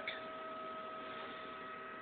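Faint, steady electrical hum with a higher whine above it from a powered-on Zeiss Humphrey Atlas corneal topographer.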